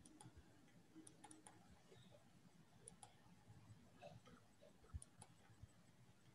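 Near silence, broken by a few faint computer mouse clicks in pairs and a short cluster, as a slideshow is put on screen share.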